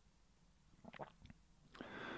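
Near silence, with a few faint short mouth clicks about a second in and a soft intake of breath near the end.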